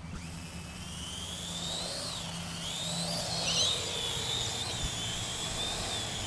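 Parrot AR.Drone quadcopter's rotors spinning up for take-off and flying: a high whine that rises and falls in pitch as the throttle changes.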